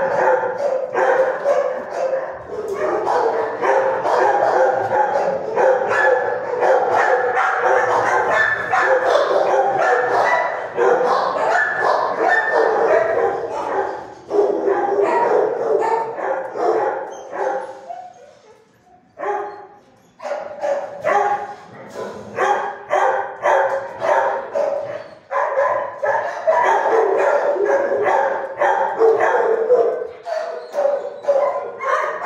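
Several dogs barking almost without pause in a tiled shelter kennel room, their barks and yips overlapping. There is a short lull a little after halfway, then the barking starts up again.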